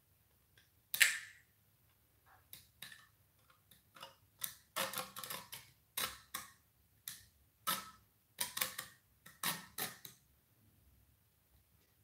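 Small hand saw cutting through a resin model part in short strokes, a few scattered ones at first, then coming quicker from about four seconds in, and stopping about ten seconds in.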